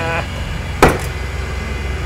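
A small machined metal pen tip, spring-ejected from a CNC lathe, lands in the metal parts catch tray with one sharp clink a little under a second in, over the steady hum of the running lathe.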